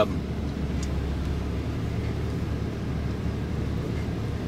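A car engine idling with a steady low rumble.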